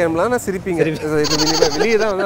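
A person speaking in a drawn-out voice whose pitch wavers up and down, with a steady hiss over the second half.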